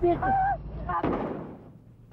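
A single bang about a second in that echoes and dies away, after a brief shouted voice.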